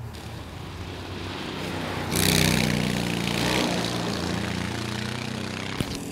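Twin-engine ProKart racing kart running on the track, growing louder and loudest about two seconds in, then holding a steady engine note. A brief click comes near the end.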